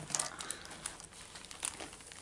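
Plastic wrapping crinkling as it is handled: irregular small crackles, a few sharper than the rest.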